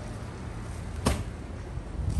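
A single sharp knock about a second in, over a steady low rumble of outdoor ambience.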